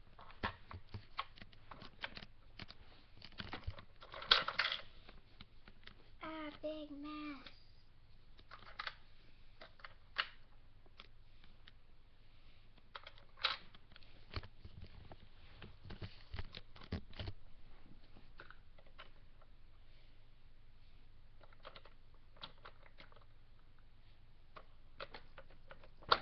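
Scattered small clicks, taps and knocks of plastic dolls and toy pieces being handled in and around a plastic dollhouse, with the sharpest knock a little after four seconds. A child says one short word about a quarter of the way in.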